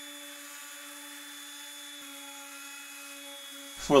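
Random orbit sander running steadily on a walnut board: an even motor hum with a faint hiss of sanding.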